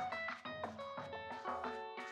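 Background music: a melody of short, quickly decaying notes several times a second over a low bass part that drops out near the end.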